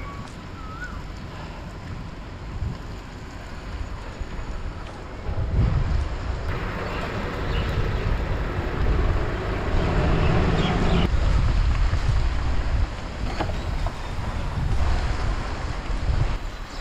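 Wind rushing over the microphone of a camera riding on a moving bicycle, a low rumbling rush that grows louder about five seconds in.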